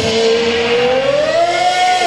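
A man's voice holding one long sung note into a microphone, level at first, then slowly rising in pitch before it breaks off.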